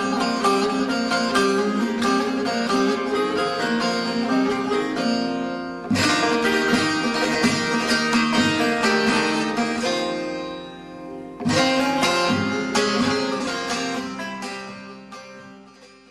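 Bağlama (Turkish long-necked saz) music: a quick plucked melody with two sharp strummed accents, about six and eleven and a half seconds in, each dying away, then fading out at the end.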